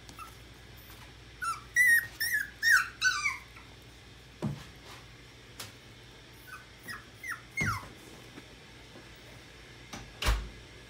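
Seven-week-old puppies whimpering in short, high yips that fall in pitch: a quick run of them about a second and a half in, and a few fainter ones later. There are also a couple of soft knocks.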